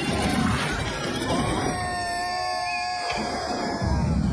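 A cartoon character's long, slightly wavering scream, starting about a second in and breaking off around three seconds, over the rough rumble and clatter of a wooden cart, which swells again near the end.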